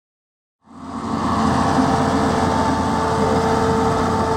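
A farm machine's engine running steadily with a constant hum, fading in quickly under a second in.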